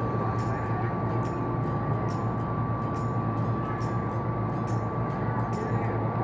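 Mist vortex (tornado) exhibit running as its mist starts to swirl: a steady low hum of fans and rushing air, with a constant high tone and faint ticks about twice a second.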